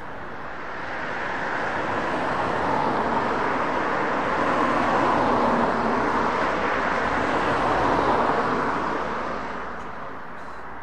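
A passing vehicle's steady rushing noise, swelling from about a second in, holding loudest through the middle and fading away near the end.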